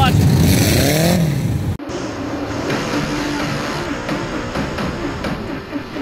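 Dirt-track race car engine accelerating past, its pitch rising for about a second, cut off abruptly about two seconds in. A quieter, wavering drone follows.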